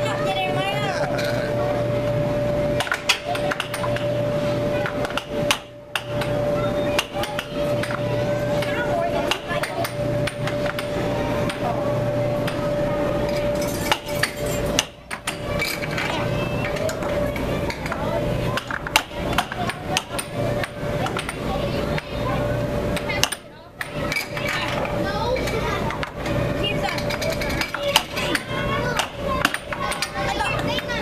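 Air hockey being played: plastic mallets and puck clacking sharply and irregularly against each other and the table's rails, over a steady hum and the chatter of children.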